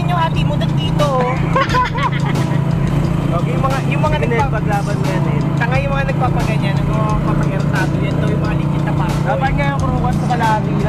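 A vehicle engine hums steadily, heard from inside while riding, with people's voices talking over it.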